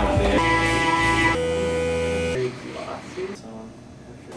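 Electric guitar music: a few held, ringing chords that stop about two and a half seconds in, leaving only faint sound.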